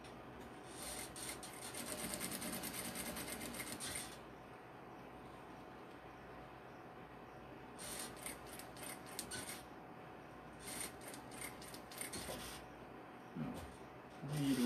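Industrial sewing machine stitching slowly in short runs: a quick even series of needle strokes for about three seconds near the start, then two shorter spells later on, as bias binding is sewn on.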